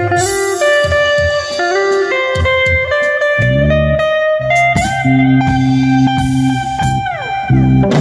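Live band music: an electric guitar plays a melody of held notes, with low bass notes coming in underneath about three and a half seconds in. Near the end a long held note slides down in pitch.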